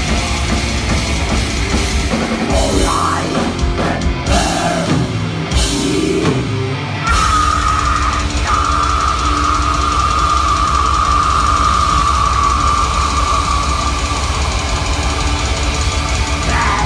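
Live black metal band, with distorted electric guitars, bass and drum kit, playing loud. About three seconds in the band thins to a few seconds of sparse hits and sliding notes, then crashes back in full with a long held high note that falls slowly in pitch.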